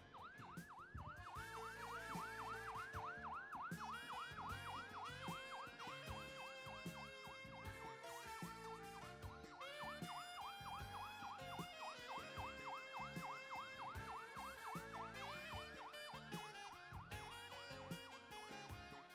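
Fire truck siren on a fast yelp, its pitch rising and falling several times a second, heard faintly with background music.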